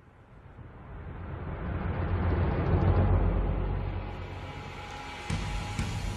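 A deep rumble that swells up over about three seconds and then eases off, with a sudden louder jump near the end.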